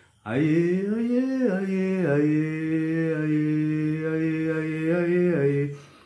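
A man singing a line of a Ghanaian gospel tune unaccompanied. His voice glides up on the first note, then steps down to one long held note and ends a little lower.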